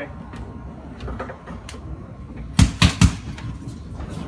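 Paintball gun firing three or four quick, sharp shots in a row, bunched within about half a second a little past the middle.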